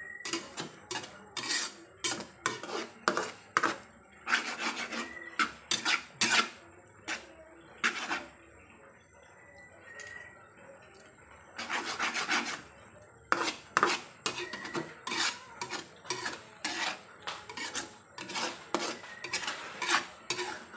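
A metal spatula scraping and stirring across a dark metal frying pan as an egg and tomato mixture cooks, in quick, irregular strokes. There is a quieter pause from about 8 to 11 seconds in, then the scraping picks up again.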